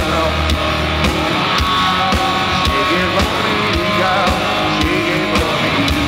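Live rock band playing loud: electric guitars and bass over a drum kit keeping a steady beat of about two hits a second.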